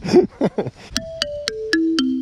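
Outdoor playground metallophone, its metal bars struck with mallets in a quick descending run of about five notes, roughly four a second, each note ringing on. Loud.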